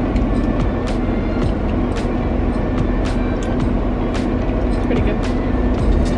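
Steady vehicle noise inside a campervan's cabin, with faint music underneath and occasional light clicks.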